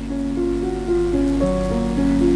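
Instrumental background music: a slow line of held notes, each changing pitch after a fraction of a second, over a steady low tone.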